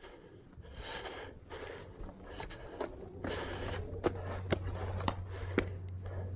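Footsteps scuffing and crunching on dry dirt and wooden steps while climbing a hillside, in short irregular scrapes with a few sharp clicks. A low steady hum comes in about halfway through.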